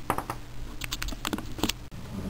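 Light, irregular clicks and taps of small plastic parts being handled on a tabletop: the stereo's broken volume/power knob piece in the fingers. The sound drops out briefly near the end.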